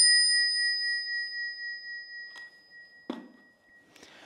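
Brass Crane Bell Co. bicycle bell, struck once by its spring-loaded striker, ringing out as one clear high tone with a long, slowly fading after-ring. A faint click and a soft knock come near the end.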